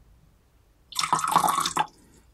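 Liquid poured in a short stream into a small vessel, lasting about a second and starting and stopping abruptly.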